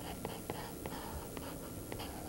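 A drawing stick scratching across paper in quick, short sketching strokes, with irregular light ticks as it touches down on the sheet.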